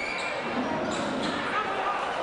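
Indoor basketball game: a crowd talking and calling out in a large reverberant hall, with a few ball bounces on the court and a short high squeak at the start.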